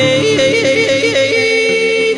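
A woman yodelling: her voice flips rapidly up and down between chest and head voice in a quick run of breaks, then holds a long note near the end, over acoustic guitar accompaniment.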